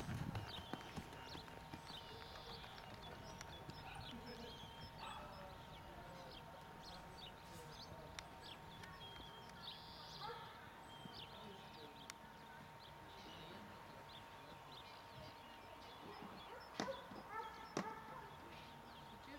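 Faint, soft hoofbeats of a Friesian mare trotting on a sand arena, with a few louder knocks near the end.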